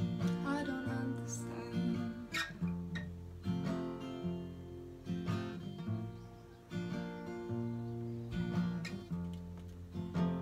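Acoustic guitar played in a pick-and-strum pattern. Each chord opens with a single bass string picked, followed by quick up, down and up strums, as the playing moves through barred B-flat, A and F chords.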